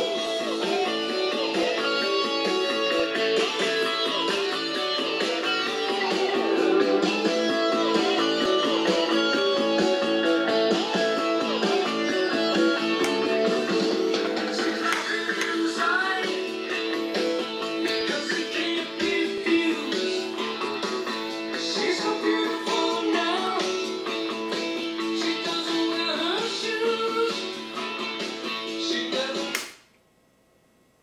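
Guitar music playing from a 1986 General Electric 7-7225A clock radio/TV, thin in the bass; it cuts off suddenly near the end.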